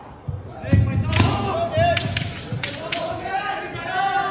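A kendo exchange: heavy stamping footwork thuds on a wooden floor, then several sharp clacks of bamboo shinai striking each other and the armour, under the fencers' long drawn-out kiai shouts.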